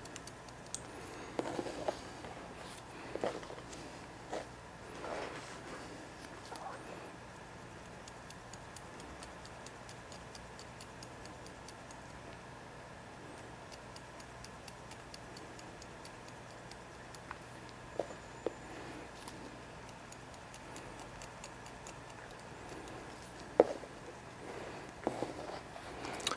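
Faint, quick runs of small snips from haircutting scissors point-cutting the ends of wet hair, with a few louder single clicks spread through, over quiet room tone.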